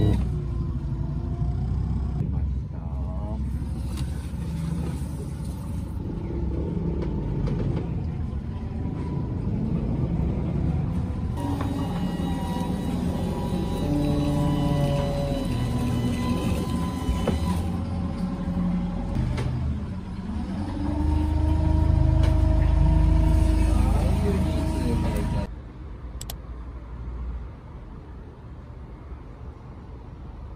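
Low rumble of a small canal sightseeing boat's motor under a melody of long held notes. Both stop abruptly about three seconds before the end, leaving a much quieter background.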